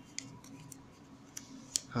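A few light, sharp clicks and taps, the last one the loudest, from handling the smartphone and its packaging as it is worked out of the box.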